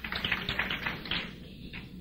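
Brief scattered clapping from a congregation, thinning out and fading about a second and a half in.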